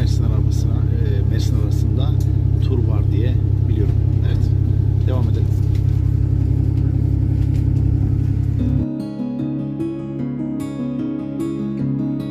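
Steady low rumble inside a moving passenger train carriage, with people's voices over it. About nine seconds in it cuts abruptly to acoustic guitar music.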